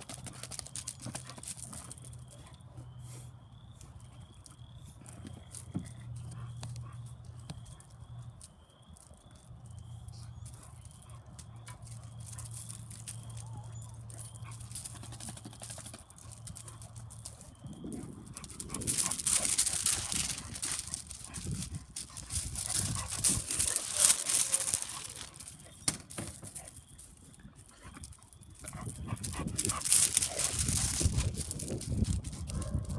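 Puppy whining in short high cries repeated about twice a second, over a low steady hum. In the second half, louder crunching of footsteps on gravel takes over.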